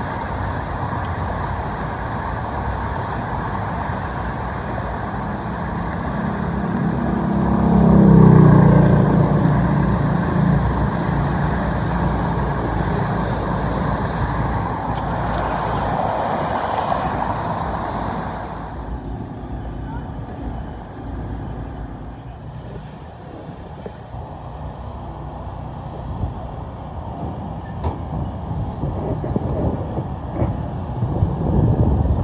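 Road traffic: vehicles passing steadily, the loudest going by about eight seconds in with its pitch falling as it passes, and the traffic quieter after about nineteen seconds.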